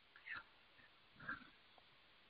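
Near silence, with two faint, short sounds, one about a third of a second in and one about a second and a quarter in.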